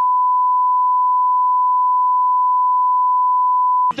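Broadcast 1 kHz reference tone, the line-up tone that goes with colour bars: one steady, pure beep held unbroken at a constant loud level. It cuts off just before the end.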